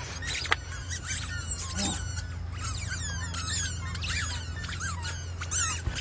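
Squeaky rubber chicken toys giving short, high-pitched squeaks, many in quick succession from about a second and a half in, over a steady low hum.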